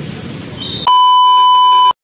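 An electronic beep tone, one steady pitch about a second long and much louder than the low street background before it, starting abruptly about a second in and cutting off just before the end.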